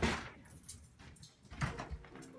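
A jingling clatter of small objects being snatched up from a desk in a hurry, followed by a couple of low thumps near the end.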